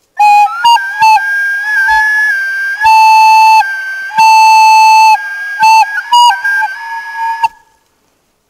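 Wooden end-blown flute played by someone with no training on it: a short, simple tune of held notes, several of them much louder than the others, that stops about half a second before the end.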